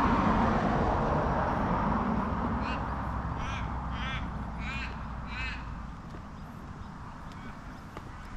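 A car driving past on the road, its tyre and engine noise fading away over the first several seconds. Midway through, a crow caws five times, about one and a half calls a second.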